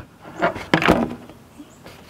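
Flat-blade screwdriver prying up the centre pin of a plastic push-pin retainer: a short scrape and a sharp click about a second in.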